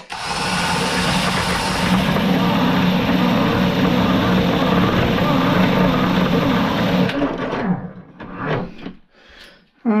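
Bench grinding wheel grinding down the head of a bolt that a cordless drill spins against it: a steady motor hum under a continuous grinding hiss, which stops about seven seconds in.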